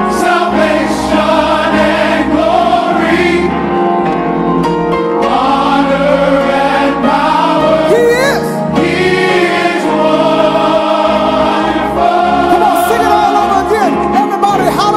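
Gospel choir singing in full harmony with instrumental backing and a steady low bass underneath.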